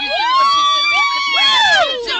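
Several voices whooping and cheering together in long, high held calls that fall away near the end.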